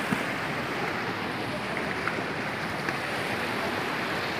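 A fast, shallow river running over rocks: a steady rush of water.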